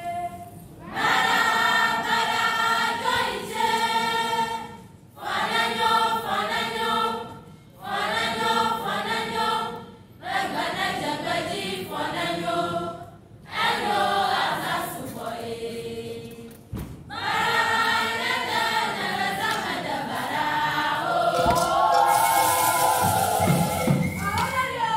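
A troupe of students singing an Ewe traditional song together in chorus, in phrases of two or three seconds with short breaks between them. Clapping breaks out near the end.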